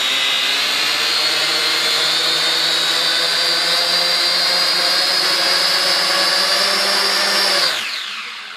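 Syma X5C-1 quadcopter's four motors and propellers spinning at full throttle: a loud, steady whine that winds down near the end. The propellers are mounted the wrong way round, so at full throttle the craft does not lift off.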